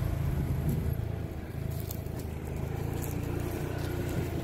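Side-by-side UTV engine running steadily with a low hum.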